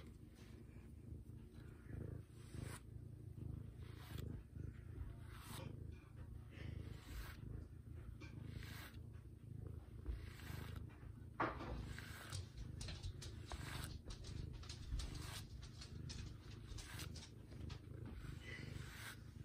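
A black cat purring steadily, with soft scratchy strokes as a brush is drawn over its head and fur.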